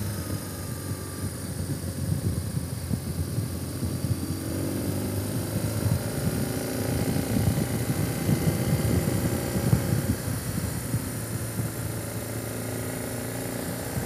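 Motorcycle engine running steadily at road speed, under a fluctuating rumble of wind on the microphone.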